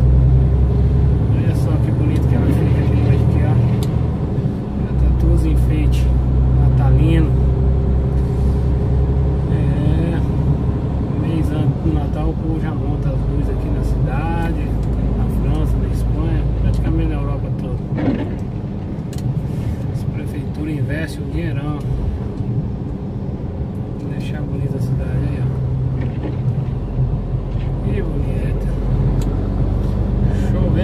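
Lorry's diesel engine running with a steady low drone heard from inside the cab while driving, its pitch stepping a few times. Voice-like sounds, not clear enough to make out words, run over it.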